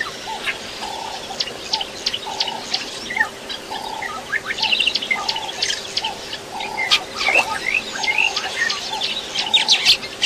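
Birds chirping: many short, high chirps and trills, over a lower call that repeats steadily about every three-quarters of a second.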